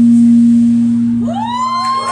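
The last note of an acoustic guitar is held and fades out. Just over a second in, the audience starts whooping and cheering, with voices rising in pitch.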